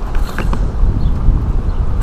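Handling noise from a fishing rod and spinning reel: a steady low rumble with a few small clicks and creaks about half a second in.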